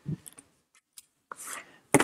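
Handling noise as a paperback book is picked up from a ledge: a few light knocks and a brief soft rub.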